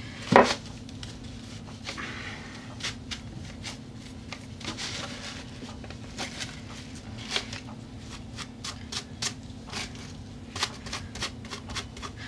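Thin tissue paper crinkling and rustling as it is handled and brushed down onto a board with glue: a string of small crackles and taps, the loudest a knock about half a second in, over a low steady hum.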